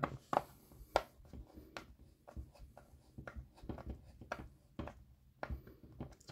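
Small screwdriver driving a tiny screw into a plastic model part: faint, irregular clicks and scratches as the screw bites into the plastic.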